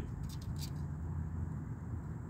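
Steady low background hum with a faint hiss, and a few light clicks near the start.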